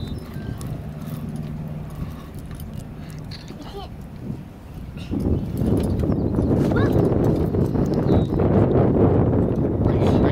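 Wind buffeting the microphone, growing much louder about halfway through, with faint voices underneath.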